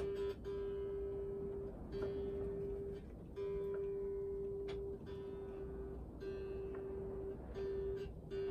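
Blues bowl, a homemade bowl-bodied three-string instrument, with one string plucked about six times, each note ringing for a second or so at the same pitch: the string's tuning is being checked and is holding.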